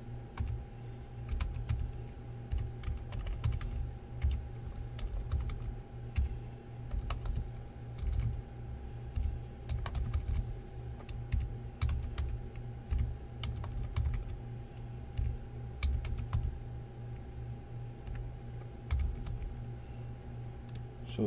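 Typing on a computer keyboard: irregular key clicks, sometimes in quick runs, over a steady low hum.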